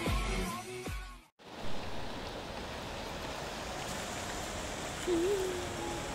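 Guitar music that cuts off abruptly about a second in, followed by the steady hiss of heavy rain falling on a greenhouse's plastic roof, with a short hum of a voice near the end.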